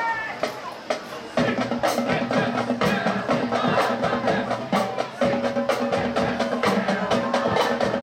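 High school marching band starting to play about a second and a half in, after a few sharp clicks: sustained brass over a drumline keeping a steady beat.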